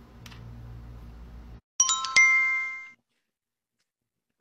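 Live-stream app's electronic notification chime: two quick ding notes about half a second apart, about two seconds in, ringing out for about a second. Before it there is a low steady electrical hum.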